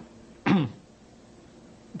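A man clearing his throat once, briefly, about half a second in, with a falling pitch; after it only a faint steady room hum.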